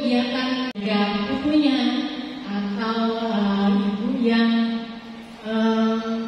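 A single woman's voice chanting through a microphone in long held notes that slide from pitch to pitch, pausing briefly near the end; a sharp click comes under a second in.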